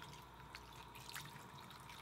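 Faint trickle of a bathroom sink faucet running in a thin stream onto a hand while a small makeup brush is rinsed, with a couple of faint ticks.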